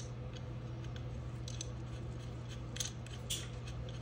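Small, light metallic clicks and ticks as a steel nut is handled and started by hand onto a bolt on a metal fixture, with a few sharper clicks near the end. A steady low hum runs underneath.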